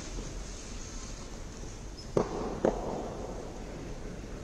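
Two sharp, echoing knocks about half a second apart, a little past halfway through, over steady background noise in a large hall.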